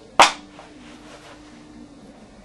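A single sharp, loud smack or knock just after the start, dying away quickly, then only a faint steady hum.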